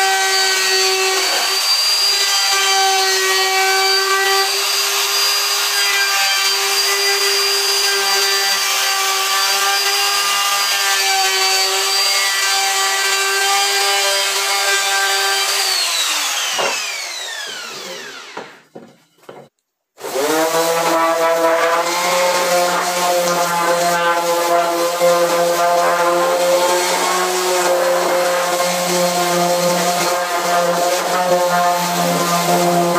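Handheld electric router running steadily as it cuts along a pine strip, then switched off about halfway through and spinning down with a falling whine. After a short silence an electric orbital sander starts up and runs steadily, sanding the pine legs.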